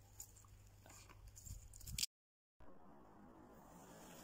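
Near silence: faint outdoor background with a few soft rustles and ticks, broken by a brief stretch of total silence about two seconds in.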